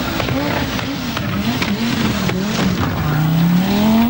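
Audi Quattro rally car's turbocharged five-cylinder engine driven hard on a gravel stage, its pitch rising and dipping as the driver works the throttle and gears, then climbing steadily in the last second as it accelerates.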